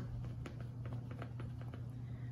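Faint scattered light clicks and rustles of hands handling a plastic RAW king-size rolling machine on a tray, over a steady low hum.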